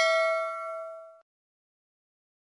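A metallic bell-like ding sound effect ringing out after its strike and fading away, gone about a second and a quarter in.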